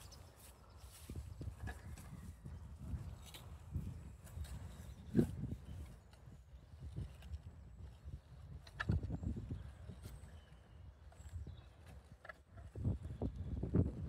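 Scattered knocks and scrapes from a child's sit-on sand digger, its metal scoop and levers being worked in wet sand, over a low steady rumble.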